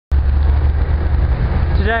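Low, gusty rumble of wind buffeting a handheld camera's microphone, with a man's voice starting to speak near the end.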